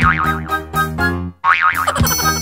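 Cartoon boing sound effect, a wobbling springy tone heard twice, at the start and about a second and a half in, over bouncy instrumental children's music.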